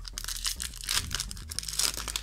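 Foil wrapper of a Yu-Gi-Oh! booster pack being torn open by hand, crinkling and ripping in several quick tears, the loudest about a second in and near the end.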